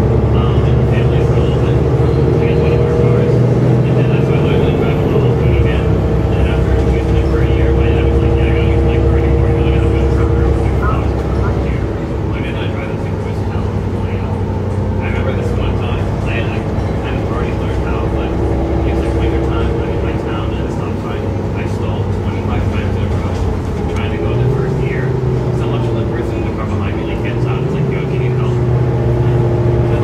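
Cabin sound of a Mercedes-Benz O530 Citaro bus under way, its OM906hLA diesel engine and Voith automatic gearbox giving a steady drone. The drone steps and bends in pitch a few times as the bus changes speed, with passengers talking over it.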